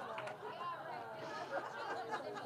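Faint voices chattering in a room, well below the level of the miked speech around them.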